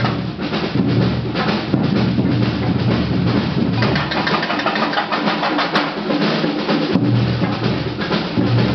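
Percussion band drumming together in a dense, driving rhythm on large bass drums and smaller snare-type drums. The deepest bass drum strokes thin out in the middle and come back strongly near the end.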